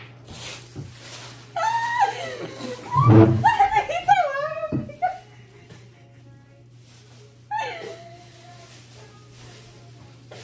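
A woman laughing hard in high, breaking fits for a few seconds, then a shorter burst of laughter a few seconds later.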